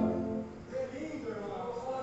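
The closing held chord of a church orchestra of wind instruments and organ dies away about half a second in, with some reverberation of the hall, followed by quiet murmuring voices.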